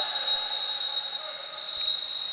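Referee's whistle, one long steady high blast cut off sharply at the end, signalling an exclusion foul in water polo.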